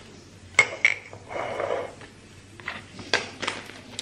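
A table knife clinking several times against a glass jar of fig jam and a plastic plate, with a short scrape of jam being spread on bread between the clinks.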